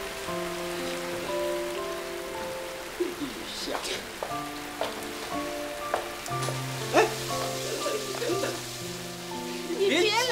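Steady rain falling, under a soft background score of sustained notes that shift in pitch every second or two, with a few brief sharp sounds in the middle.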